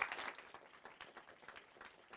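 Audience applause dying away within the first half second, leaving a few faint scattered claps.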